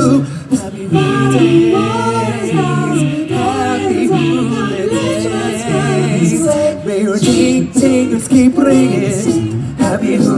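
Male a cappella vocal group singing in close harmony through handheld microphones, several voices at once with a bass line underneath and no instruments.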